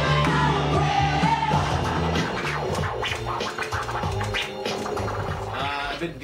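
Dance music playing, with a DJ scratching a vinyl record on a turntable: quick back-and-forth scratch strokes come in over the beat from about two seconds in.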